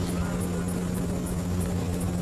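A steady low hum with a faint hiss under it, unchanging throughout.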